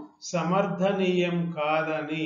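Only speech: a man lecturing in Telugu, with long drawn-out syllables and a brief pause just after the start.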